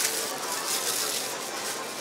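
Thin plastic produce bag rustling and crinkling as a cabbage is handled in it, over faint background voices of store shoppers.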